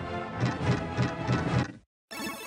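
Slot machine game's reel-spin music with a fast, steady beat, cutting off suddenly near the end as the reels come to a stop.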